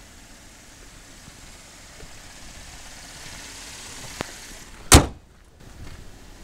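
2012 Chevrolet Impala's 3.6-litre V6 idling, with a light click about four seconds in, then a single loud bang about five seconds in as the hood is slammed shut.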